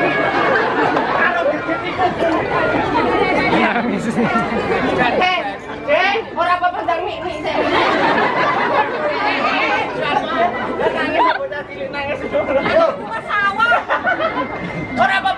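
Several people talking over one another in lively banter, with crowd chatter around them.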